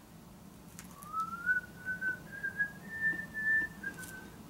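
A person whistling a slow tune, starting about a second in, with a run of held notes that climb in pitch and dip slightly at the end.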